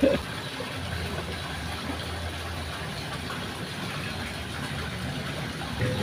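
An engine idling steadily, a low, even hum.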